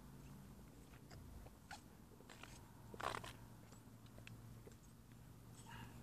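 Near silence with faint scattered clicks and rustles, and one short louder rustle about three seconds in.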